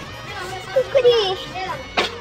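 A young child's high-pitched voice calling out about a second in, over background music.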